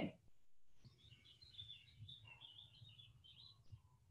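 Near silence, with a faint bird chirping in the background from about a second in until near the end.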